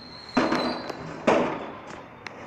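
Two loud, sudden bangs about a second apart, each dying away over about half a second.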